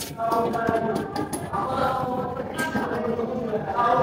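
Faint singing voice in the background, holding notes that change about every second; very light clicks of handling are barely there beneath it.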